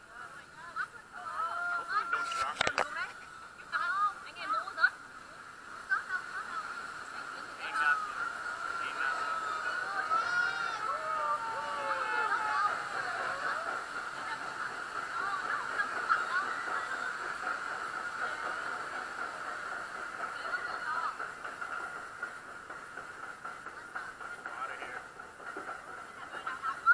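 Riders' voices and calls on a river-rapids raft ride, thin and muffled as picked up through a waterproof camera housing. A sharp knock comes about two and a half seconds in.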